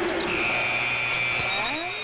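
Arena shot-clock buzzer sounding one long, steady, high-pitched buzz of about two seconds, starting a moment in: the shot clock has expired, a shot clock violation.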